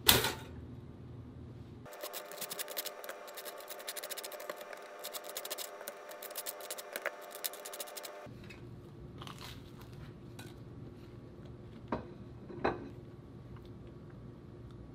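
A sharp clack at the very start as the toaster pops up, then a table knife scraping spread across the crisp, nearly burnt cut face of a toasted bagel in quick rasping strokes for about six seconds. A few faint clicks follow near the end.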